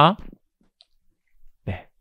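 A man's lecturing voice finishes a sentence, then pauses for about a second and a half of near silence before speaking again near the end.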